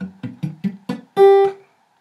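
Acoustic guitar with a G major chord fretted, its strings picked one at a time: about five short notes in quick succession, then a louder, clear top note that is cut short after a moment. Each string is being checked to ring cleanly, with no dead string.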